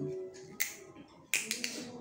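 Sharp plastic clicks of the cap being twisted off a bottle of liquid medicine: one about half a second in, then a quick cluster of three or so just after the middle.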